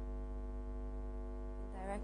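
Steady electrical mains hum, a constant buzzing drone made of many fixed tones, with a voice starting to speak near the end.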